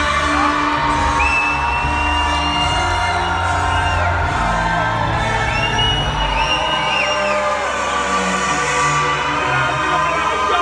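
Live extreme-metal band playing loud through a venue PA, recorded from within the crowd, with crowd whoops over it. The heavy bass drops away about seven seconds in, leaving long, high held tones above.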